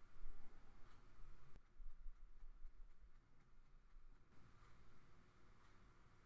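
Near silence: faint room tone with a few low rumbles and bumps.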